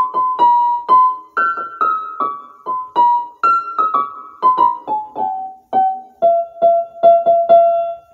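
Piano-like keyboard playing a simple single-note melody, about two to three notes a second, stepping downward in pitch and ending on one note struck several times over.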